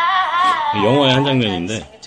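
Recorded singing played back: a high voice, then about a second in a lower voice holding a note with a wavering vibrato.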